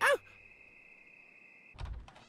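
Faint, steady high-pitched trill of crickets in a night scene. About 1.8 seconds in it is cut off by a short low knock with a few clicks.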